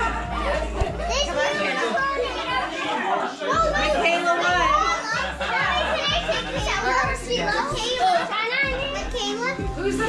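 Many children's voices talking and shouting over one another, with music playing underneath.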